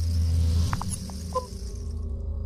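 Logo-intro sound design: a deep electronic drone swells up under a hissing whoosh, and a few short high digital blips sound about a second in.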